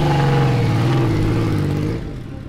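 Honda CX 650 cafe racer's V-twin engine running through its peashooter exhaust as the bike rides off slowly, a steady note that eases off slightly near the end.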